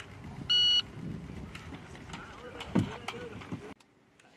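Electronic shot timer giving its short start beep about half a second in, the signal to begin firing after "stand by"; afterwards a few sharp clicks and knocks over low background murmur, and the sound cuts off just before the end.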